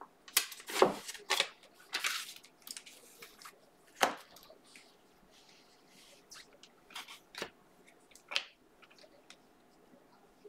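Glossy Panini Prizm trading cards handled and flipped through one at a time: cards sliding and snapping against each other in irregular rustles and clicks, busiest in the first two seconds, with one sharper snap about four seconds in and sparser ticks after.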